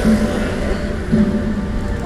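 Busy city street traffic noise, a steady rumble, with music playing underneath it.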